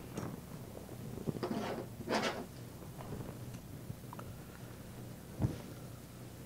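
Faint handling noises from working on the printer's top plate: two brief soft scrapes about one and a half and two seconds in, and a dull knock near the end.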